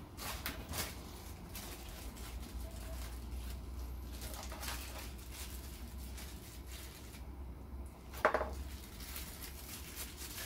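Light handling noise of a plastic-bagged microscope lens being taken from polystyrene foam packaging, with occasional rustles over a low steady hum. A brief, sharper sound stands out a little after eight seconds.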